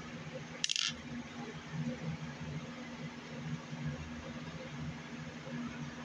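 A steady low hum with a single short, sharp click about a second in.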